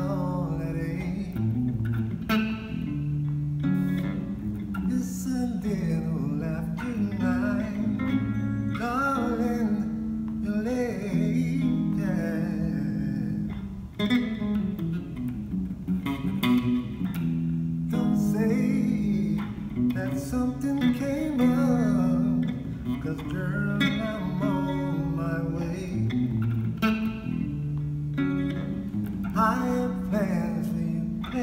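Electric bass guitar playing a smooth soul/R&B groove, the notes moving steadily with no pause.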